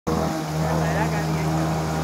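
A motorcycle engine running steadily at low revs as the bike rides through shallow floodwater.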